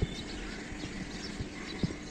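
Steady outdoor background noise with small birds chirping throughout, and two or three short knocks, one near the start and two in the second half.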